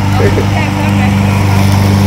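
Walk-behind gasoline lawn mower running steadily at constant speed as it is pushed across grass, cutting the lawn.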